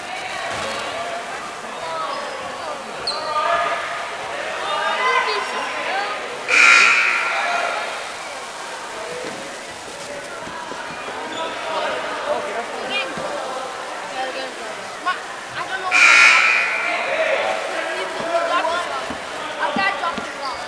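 Gym sounds at a basketball game: spectators' chatter and voices, with a basketball bouncing on the hardwood. Two louder bursts of crowd noise come about six and sixteen seconds in.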